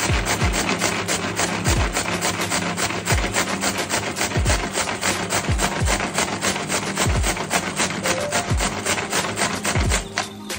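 Small food chopper running under a pressing hand, chopping onions, a rapid rough grinding-and-rattling noise that stops at the end. Over it plays background music with deep bass notes that fall in pitch about once a second.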